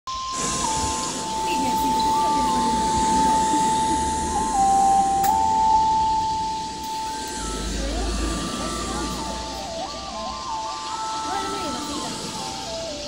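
A thin electronic melody of single pure tones stepping up and down between a few pitches. The notes are held long at first and change more quickly in the second half, over the murmur of people talking.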